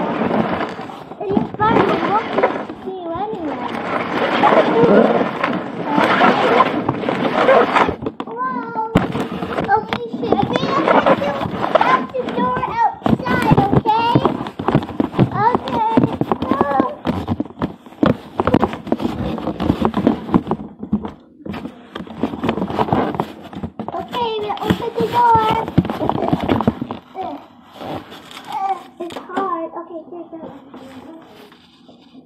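A child's voice talking and vocalizing almost continuously in play, with no clear words, dying down near the end.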